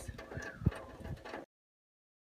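Faint background sound broken by a single sharp knock, then the audio cuts off abruptly to dead silence about three-quarters of the way through.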